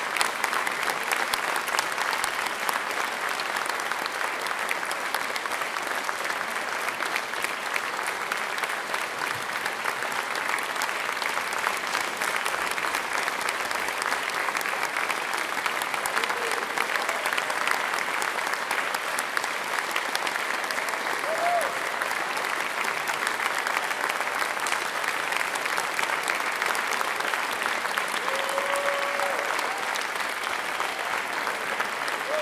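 Large audience applauding steadily in a concert hall, a dense even clapping, with a few brief shouts from the crowd.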